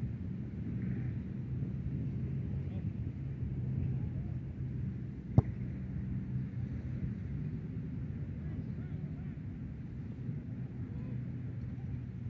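Open-field ambience: a steady low rumble with faint, distant shouts of soccer players, and one sharp knock a little after the middle.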